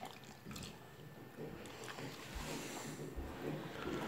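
Small wet mouth sounds from a golden retriever puppy licking and chewing, with scattered little clicks and two dull low thumps in the second half.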